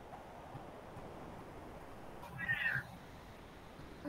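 A short, high-pitched cry, curving up and back down in pitch and lasting about half a second, about two and a half seconds in, over a faint steady hiss.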